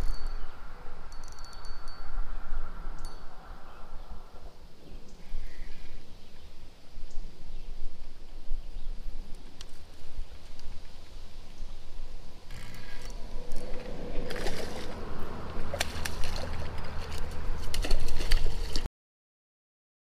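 A hooked carp being played on a spinning rod: wind rumbles on the microphone, and water splashes and sloshes, heavier in the last few seconds. Then the sound cuts off suddenly.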